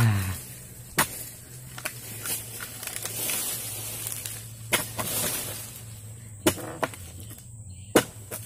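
Sharp, irregularly spaced knocks of a long-handled harvesting chisel striking into the base of oil palm fronds, with a rustle of a cut frond falling about midway.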